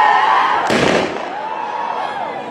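Voices shouting and whooping in long wavering calls, with a short burst of noise about two-thirds of a second in.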